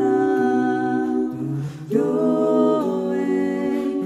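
A five-voice a cappella group sings a Japanese song in close harmony, holding chords that shift from note to note. There is a brief drop just before two seconds in, then a new chord comes in.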